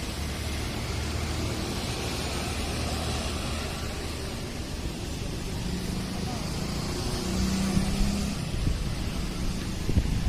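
Steady outdoor road-traffic noise, a continuous rumble of passing vehicles, getting louder from about seven seconds in.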